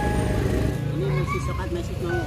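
Steady low rumble of road traffic, with quiet talk over it.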